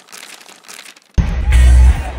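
A crinkly paper-tearing sound effect for about the first second, then loud music with heavy bass cuts in suddenly.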